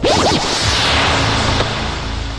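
Film sound-effect whoosh: a sudden rush of hiss that swells and fades over about a second and a half.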